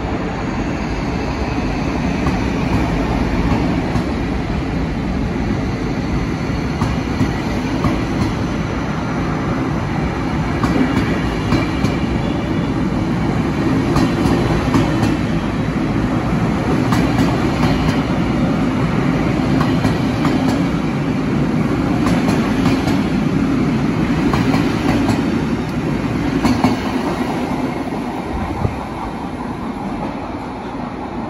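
Double-deck passenger train rolling along an underground station platform: a steady rumble with scattered clicks of wheels over rail joints, dying down near the end.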